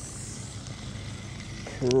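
Steady hiss of rain falling, with a man's voice coming in near the end.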